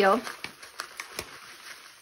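Dried, coarse-cut orange peel pouring into a stainless steel measuring cup: a soft dry rustle with a few light clicks as the pieces land.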